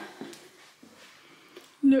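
Faint footsteps and light rustling on a carpeted floor: a few soft, scattered clicks in a quiet room. A woman starts speaking near the end.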